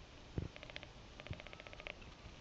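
Quiet handling of a small hand-held forestry instrument, a Spiegel Relaskop: one soft bump about half a second in. Twice after it comes a faint, rapid high-pitched trill of ticks, each run lasting under a second.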